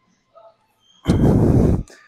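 A weightlifter's forceful, straining breath out as he presses a pair of dumbbells up from an incline bench, starting about a second in and lasting under a second.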